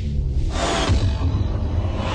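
Intro sting music for a sports broadcast graphic: a deep, steady bass rumble with a whoosh that swells in about half a second in.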